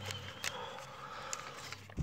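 Faint crinkling of a vintage wax-paper card-pack wrapper being peeled open slowly by hand, with a few light crackles.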